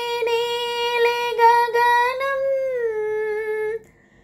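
A woman singing a Hindi patriotic song solo, holding one long, steady note that lifts slightly in the middle and stops shortly before the end.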